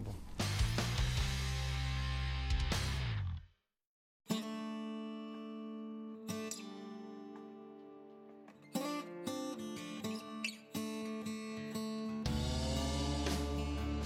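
Background music: after a short opening passage it drops to silence for under a second, then plucked guitar notes ring out and decay, and a fuller arrangement with bass comes in near the end.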